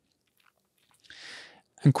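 A short, soft intake of breath through the mouth, about half a second long, following about a second of near silence.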